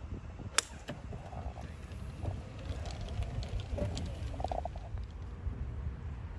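Golf club striking the ball once on a short pitch shot: a single sharp click about half a second in, over a steady low rumble of wind on the microphone.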